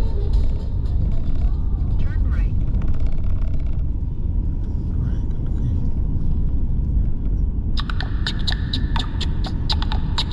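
Steady low rumble of a Mercedes-Benz car driving, heard from inside the cabin, as background music fades out just after the start. About eight seconds in, a song starts with a sharp, even beat of about four strokes a second.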